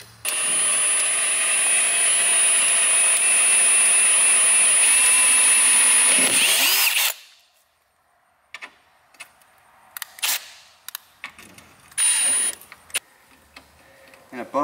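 Milwaukee cordless drill boring into a rusted-through, snapped-off steel bolt in the headlight mount, drilling it out. The drill runs steadily at a high whine for about seven seconds, then spins down. A few small clicks follow, then a brief second burst of drilling near the end.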